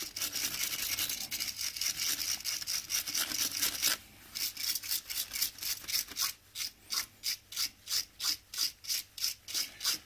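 Small brass wire brush scrubbing excess gasket sealant off a Triumph Bonneville gearbox casing. It is a steady scrubbing for about four seconds, then a brief pause, then quick short strokes about three a second.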